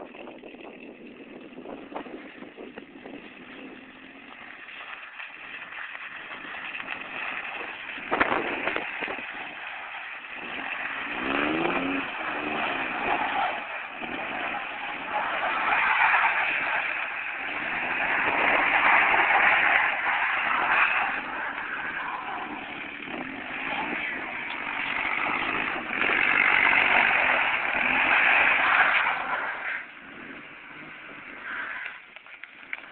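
Chevrolet Blazer's engine revving as the SUV drives and slides around on ice, the sound rising and falling in repeated swells and loudest near the end as it comes close.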